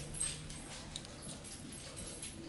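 Faint handling sounds with light ticks as thread is wrapped from a bobbin around a fly hook.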